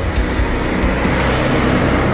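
Steady noise of road traffic, a motor vehicle going past.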